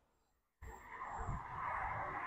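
A fibreglass boat hatch lid on gas-assist struts being lowered by hand, with a steady hissing, rubbing noise that starts about half a second in and slowly grows louder.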